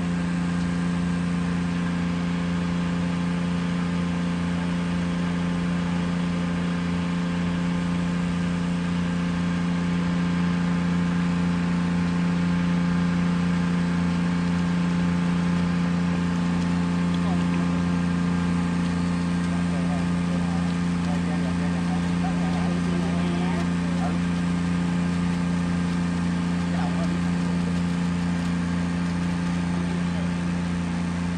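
Shrimp pond aerator motors running with a steady, even low hum.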